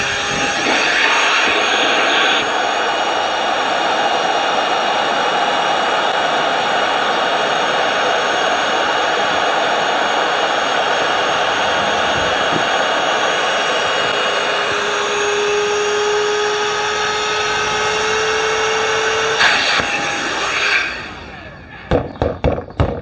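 Parkside PALP 20 A1 cordless air pump running steadily, blowing air into a rubber boat's inflatable chamber, with a faint tone that rises slightly in pitch later on. It stops near the end.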